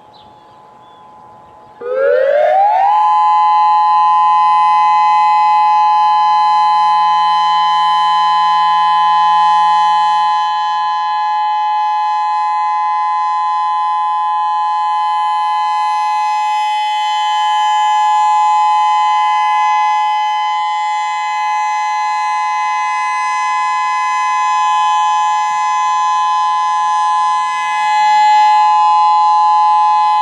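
Whelen WPS-3016 electronic siren sounding its alert tone: about two seconds in it sweeps up in pitch over a second, then holds a loud, steady two-note tone that swells and fades slightly as the horn rotates.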